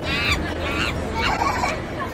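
A young child's high-pitched squeals, three short ones in quick succession, over a steady low rumble.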